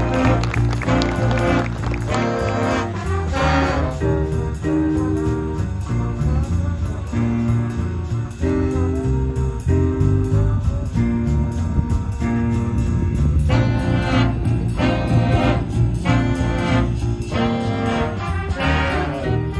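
Jazz big band playing with drums and bass underneath. Short brass chords repeat in the first few seconds, then a quieter stretch of single held notes follows, and the full horn section comes back in about three-quarters of the way through.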